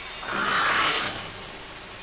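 A rushing, hissing noise that swells about half a second in and fades away over the next second.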